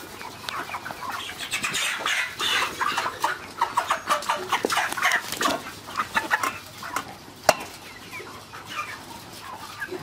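A flock of Ross 308 broiler chickens clucking and calling in short, irregular notes, with scuffling as birds are handled. There is one sharp click about seven and a half seconds in.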